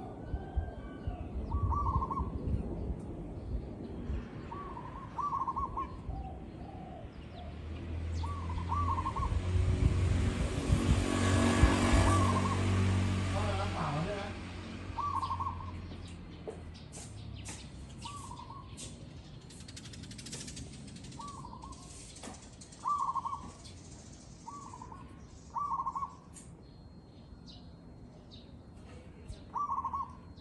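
Zebra dove calling: short, trilled cooing phrases repeated about a dozen times, a second or a few seconds apart. A louder rushing noise with a low hum swells and fades in the middle, peaking about twelve seconds in.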